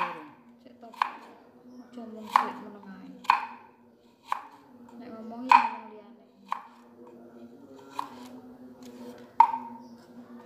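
Kitchen knife chopping fresh turmeric root into thin slices on a wooden chopping board: about nine sharp knocks, irregularly spaced, roughly one a second.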